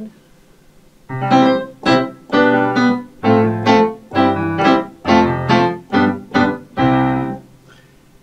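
Nord Piano 3 digital stage piano playing its Silver Grand sampled grand piano voice, which the player thinks is a Kawai: a short run of chords, about two a second, starting about a second in and stopping shortly before the end.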